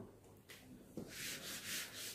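Faint rubbing of a hand sliding across a sheet of paper, a soft hissing sound in a few swells over the second half.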